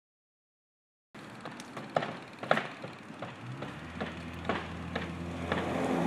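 Shrub leaves and twigs rustling and snapping in scattered sharp crackles as a toddler pulls at the bush, starting about a second in. A low steady hum joins partway through.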